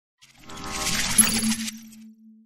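Channel logo sting sound effect: a swelling noisy rush with high ringing tones and a sharp click about a second in. It breaks off suddenly after about a second and a half, leaving a low steady hum.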